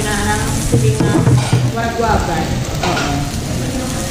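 Slices of samgyeopsal pork belly sizzling steadily on a hot tabletop grill plate.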